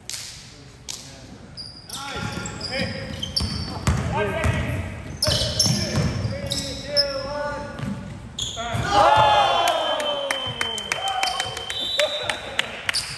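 Basketball dribbled on a hardwood gym floor, with short high sneaker squeaks and players' voices calling out. The voices are loudest about nine seconds in.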